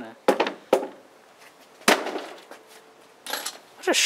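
A wooden log rammed down onto a wooden stereo speaker cabinet: three sharp knocks of wood on wood, the first two half a second apart and the third about a second later. A man's voice calls out near the end.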